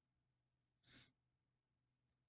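Near silence, with a single faint breath from a woman about a second in.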